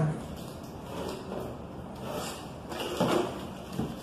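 Handling noise as a TV's front bezel frame is lifted off its LCD panel: faint rubbing, with a louder scrape about three seconds in and a light knock just before the end.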